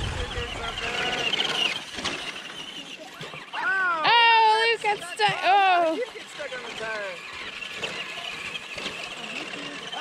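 A small electric RC truck's motor whining high over the first two seconds, then high-pitched voices calling out loudly from about four to six seconds in.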